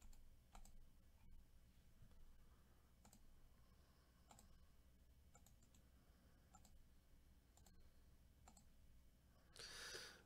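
Faint computer mouse clicks, about ten at irregular intervals, over near-silent room tone, with a short rush of hiss just before the end.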